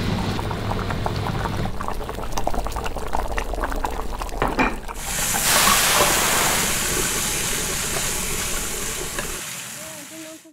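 Stir-frying in a wok: a low steady hum with light clinks, then about five seconds in a loud sizzle as green vegetables hit the hot oil with meat, slowly dying down while they are stirred with a wooden spatula.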